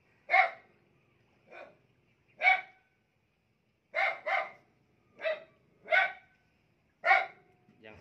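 A dog barking: about eight short, single barks at irregular intervals, including a quick pair about four seconds in.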